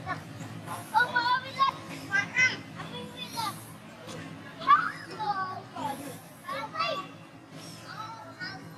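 Juvenile long-tailed macaques giving repeated high-pitched squeals and screeches that rise and fall in pitch while they playfight, the loudest about two-thirds of the way in, over a steady low hum.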